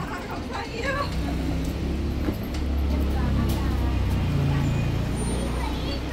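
A 2021 Edison Motors Smart 093 electric bus standing close by at the kerb, giving a steady low hum that swells about a second in and holds. People's voices are heard briefly near the start.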